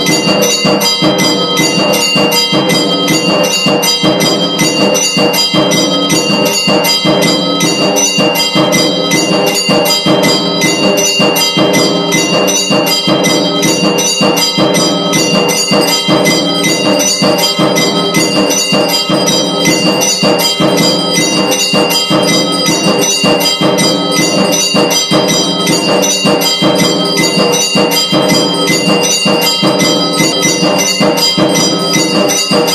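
Temple aarti bells ringing rapidly and without pause, a loud, steady clangour of repeated strikes with ringing high tones.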